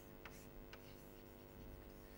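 Chalk writing on a chalkboard: faint taps and scratches of the chalk, a few short ticks, over a steady low hum.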